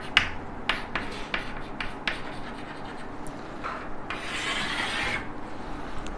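Chalk writing on a blackboard: a run of short taps and scratches as letters are written, then one longer scraping stroke of about a second, about four seconds in.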